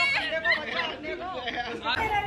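Several people talking at once, voices overlapping in chatter.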